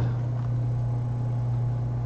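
Steady low hum with a faint hiss underneath: the background noise of the recording, with nothing else standing out.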